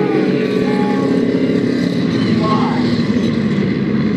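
Engines of Ford Focus midget race cars (four-cylinder) running in a steady, loud drone, with people's voices mixed in.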